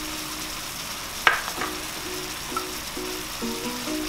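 Butter and maple syrup glaze bubbling and sizzling steadily around carrot batons in a nonstick frying pan as it reduces and thickens. There is one sharp click about a second in.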